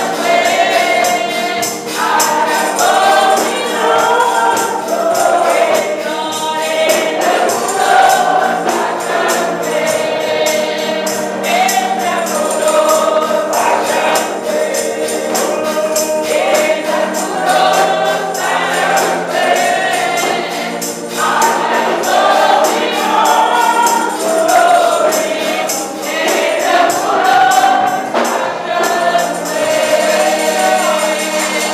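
Church congregation singing a gospel song together, with a steady percussive beat, typical of tambourine, running under the voices.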